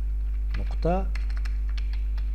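Computer keyboard being typed on: a quick run of key clicks starting about half a second in as a short word is keyed. A steady low electrical hum runs underneath.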